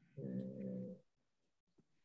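A person's voice drawing out a hesitation filler, 'é...', on one steady pitch for just under a second, then silence.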